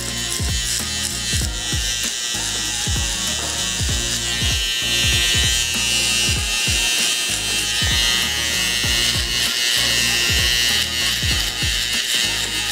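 BaBylissPRO cordless T-blade trimmer buzzing as it takes hair down to the skin along a fade line, with the buzz stronger from about a third of the way in. Background music with a steady beat plays throughout.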